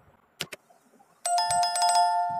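Subscribe-button pop-up sound effect: two quick clicks, then about a second in a bright electronic bell chime, struck rapidly several times and left ringing.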